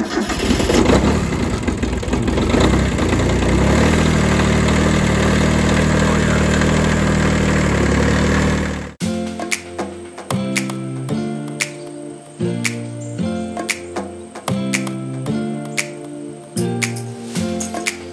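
Small Kubota diesel tractor engine cold-starting in the freezing cold after its glow plugs were heated: it starts up loudly and settles into a steady run after a few seconds. About nine seconds in, the engine sound cuts off suddenly and background music with a steady rhythm takes over.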